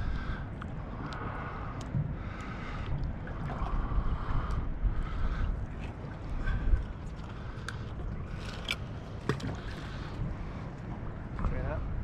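Wind buffeting the microphone and water slapping against a small boat's hull, with faint muffled voices and a few light clicks.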